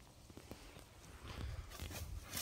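Faint, scattered footfalls of dogs' paws on dirt and dry leaves: a few light ticks, then a louder rustle near the end.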